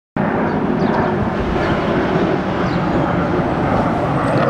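Loud, steady outdoor street noise: a continuous low rumble and hiss.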